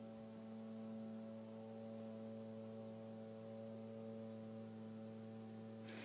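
Faint, steady electrical hum in the recording: several steady tones that hold unchanged, with no other sound.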